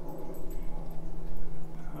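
A dog whimpering, over a steady low hum.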